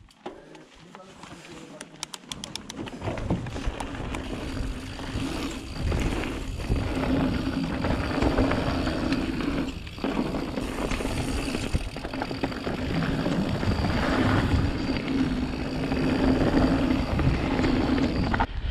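Mountain bike rolling down a dirt singletrack: tyre noise, rattling of the bike and wind on the camera microphone, building over the first three seconds as it picks up speed and then staying steady. About two seconds in there is a quick run of clicks as the wheels roll over the wooden boardwalk slats.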